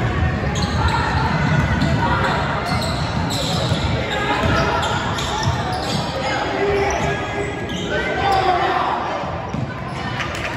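A basketball being dribbled on a hardwood gym floor during play, with spectators' voices and calls echoing around the large gym.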